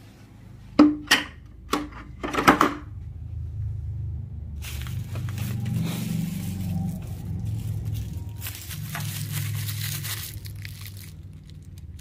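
A few sharp knocks and clicks in the first three seconds, then plastic wrapping crinkling and rustling for several seconds as a plastic-wrapped firework aerial shell is handled.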